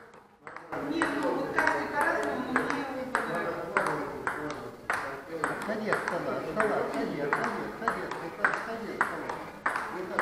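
Table tennis rally: the ball clicks off the bats and the table at about two to three hits a second, starting about a second in. One player's bat is faced with anti-spin rubber.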